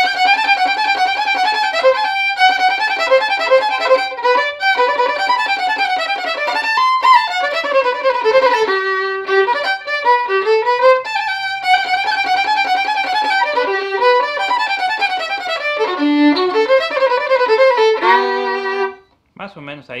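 Solo violin playing a huasteco (huapango) fiddle melody at full tempo: quick bowed notes running up and down with a few brief breaks. It ends on a held note about a second before the end.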